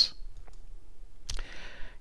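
A pause between spoken sentences: a couple of faint clicks, then a brief soft hiss just before speech resumes.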